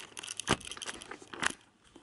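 Camera handling noise as the camera is set on a tripod and turned: a run of clicks and rubbing with two sharper knocks, about half a second and a second and a half in.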